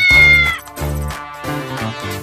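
A cat's single meow, about half a second long, that rises at the start and then holds its pitch. It is the loudest sound here, heard over background music with a steady beat.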